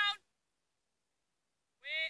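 Sheep bleating: a short, high call right at the start, then silence, and another bleat beginning near the end.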